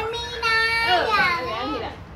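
Speech: a high-pitched voice saying one long, drawn-out phrase.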